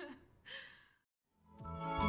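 A woman's short breathy laugh, then a second of dead silence, then background music fading in about a second and a half in and getting louder.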